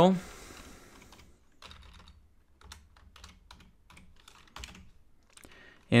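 Computer keyboard typing: a quiet, irregular run of key clicks, starting a second or so in.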